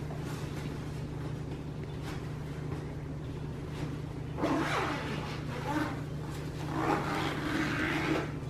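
Stroller seat canopy fabric being handled and pushed back: a few bursts of rustling and shuffling from about halfway in, over a steady low hum.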